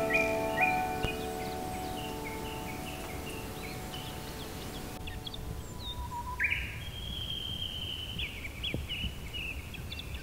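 Forest birdsong: repeated short chirps, then from about six seconds in a longer, steady song phrase lasting about three seconds. The last held piano notes of a soft piece fade out in the first few seconds.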